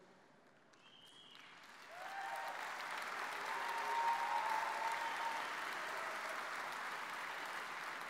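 A large seated audience applauding. The clapping starts faintly about a second in, swells to full applause about two seconds in, and then holds steady.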